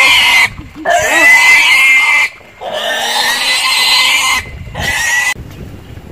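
Pig squealing loudly in four long, shrill squeals with short breaks between them; the last one ends about five seconds in.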